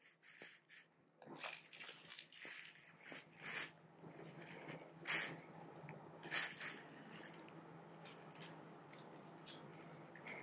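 Faint handling noises: scattered light clicks and rustles as a compound bow's arrow rest is adjusted by hand, its windage knob turned to move the rest left or right. A faint steady hum lies underneath.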